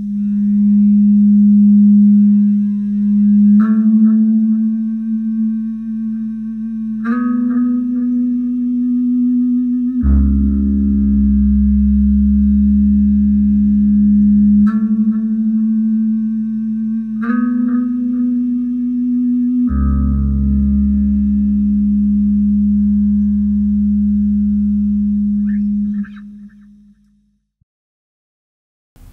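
Jackson Rhoads electric guitar played clean with an EBow: long, evenly sustained notes that step between a few pitches every few seconds, twice joined by a deeper low note, then fading out near the end.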